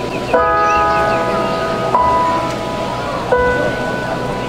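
Bells struck one at a time, three strikes about a second and a half apart, each on a different note and ringing on after it is hit.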